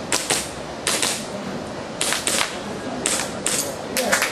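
Airsoft pistol firing a string of sharp shots, about ten in all, mostly in quick pairs.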